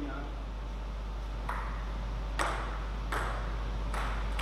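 Table tennis ball bouncing: four sharp ticks a little under a second apart, each with a short echo, over a steady low hum.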